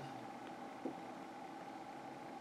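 Quiet room tone: a faint steady background hiss with a thin, even hum-like tone, and one small soft click a little under a second in.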